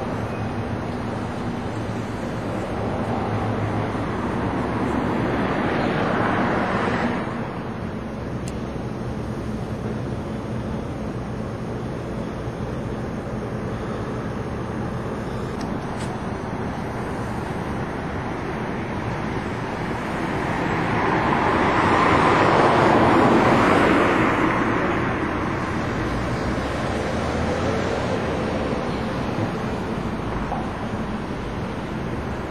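Road traffic running steadily past, with two louder vehicle passes: one builds and then cuts off suddenly about seven seconds in, and another rises and fades away in the last third.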